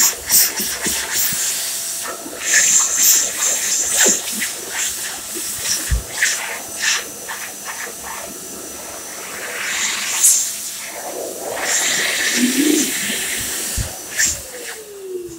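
Phs Airstream Vitesse electric hand dryer blowing, a loud, hissing rush of air that swells and dips unevenly as hands move in and out of the airflow.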